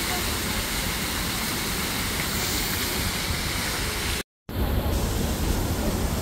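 Large fountain's water jets splashing into a stone basin: a steady rush of water noise. It cuts out briefly about four seconds in and comes back with more low rumble.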